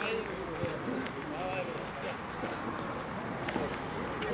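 Men's voices talking in the background, not close to the microphone, with a few short sharp clicks.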